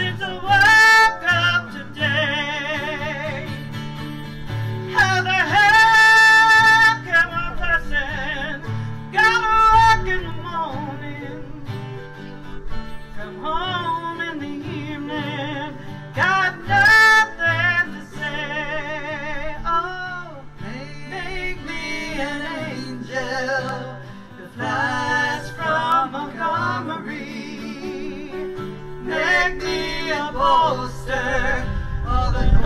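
Live acoustic folk-country song: a singer holding high, long notes with a wide vibrato over a strummed acoustic guitar and a mandolin.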